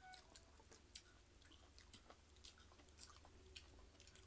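Faint chewing of a mouthful of food, with scattered small irregular clicks from the mouth.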